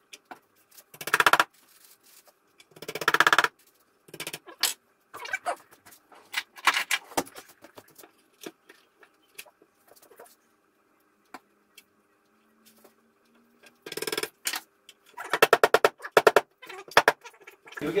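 Wood glue squeezed from a Titebond squeeze bottle into dowel holes, spluttering out in several short buzzing squirts: twice near the start and a longer run near the end. Scattered light clicks and knocks between the squirts.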